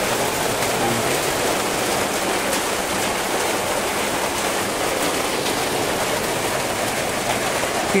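Rain falling on a corrugated metal roof, a steady, even rush of noise that does not let up.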